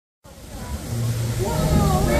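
Busy city street ambience fading in just after the start: a low rumble with the chatter of a crowd, the voices growing clearer in the second half.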